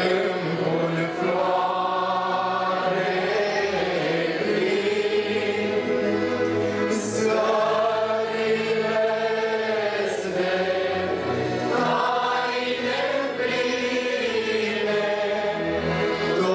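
A choir singing a slow hymn, with long held notes that shift gently from chord to chord.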